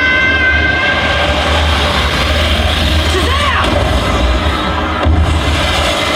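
Movie montage soundtrack playing through a theater's speakers: loud music with heavy bass, mixed with short shouts and lines of film dialogue.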